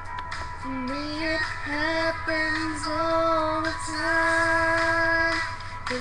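A young woman singing solo, coming in about a second in and holding long sustained notes before breaking off near the end, over a quiet keyboard accompaniment.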